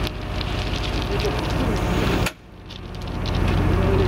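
Heavy diesel engine of track-construction machinery running steadily at low revs, with faint clicks over it. The sound drops sharply a little past halfway and builds back over about a second.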